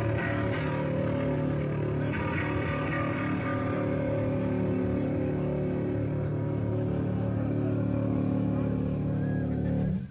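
A live heavy rock band: distorted electric guitars and bass hold a long, droning chord over drums. The sound stops abruptly at the very end.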